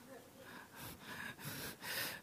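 A person's faint breaths and soft voice sounds, a few short quiet puffs in a pause between spoken words.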